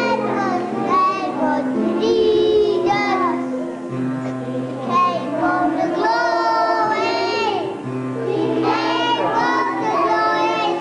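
Children singing a song at a nativity pageant, with a child's voice carrying the melody over held accompanying notes.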